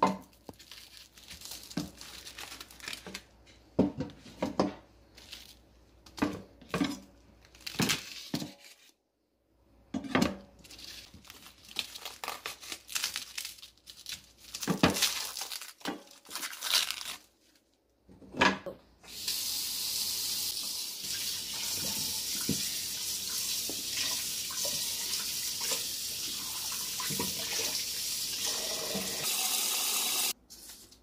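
Cling film being peeled and torn off foam meat trays, with crinkling and handling noises, then a kitchen tap running steadily from about two-thirds of the way in.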